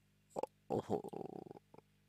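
A person's brief, irregular gurgling mouth or throat noise, lasting about a second, with a short sound just before it and a couple of faint clicks after.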